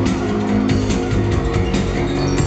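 Live rock band playing loudly on stage, heard from the audience: an instrumental stretch between sung lines, with held guitar and keyboard notes over steady drum hits.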